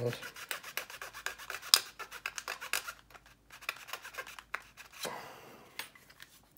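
Fine-toothed hobby razor saw cutting through a plastic model aircraft fuselage with quick rasping back-and-forth strokes, thinning out about halfway as the last of the cut goes through to part off the nose section.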